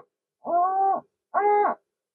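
BFO beat note of a Hammarlund HQ-140-XA receiver, heard from its speaker as the BFO beats against a signal injected at the IF. Three short tones, each rising and then falling in pitch, with silent gaps between them, as the CW tone control is rocked either side of zero beat.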